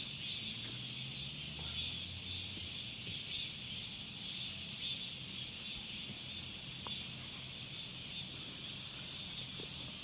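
Chorus of summer insects: a dense, steady high-pitched buzz that holds without a break.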